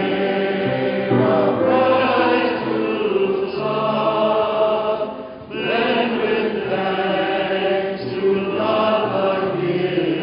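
A group of voices singing a slow church hymn in long held notes, with a short break for breath about halfway through.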